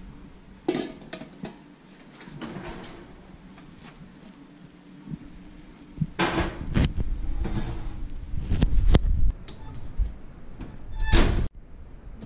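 Oven door, rack and a lidded enamel roasting pan knocking and clanking as the pan is loaded into a kitchen oven. There are a few separate knocks and clatters, the loudest about six seconds in and again near the end.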